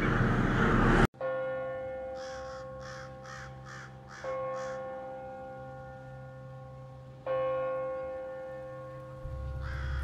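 A bell tolling three times, about three seconds apart, each stroke ringing on and slowly fading, while a crow caws about six times in quick succession between the first two strokes. A noisy rushing sound cuts off abruptly about a second in, just as the first stroke lands.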